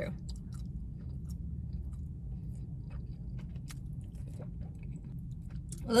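A person chewing a mouthful of thick, chewy fresh-cut noodles, with small wet mouth clicks throughout, over a steady low hum.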